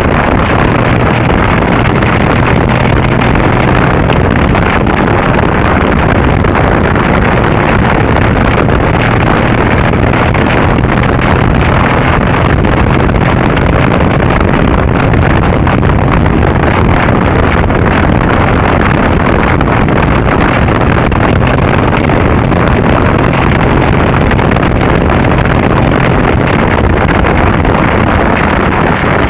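Wind rushing over the microphone at road speed, with the steady drone of the Triumph Bonneville's parallel-twin engine underneath. It is loud and even throughout, with no change in pitch.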